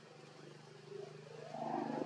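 A macaque's low, pitched vocal call swelling up about one and a half seconds in, over a steady low hum.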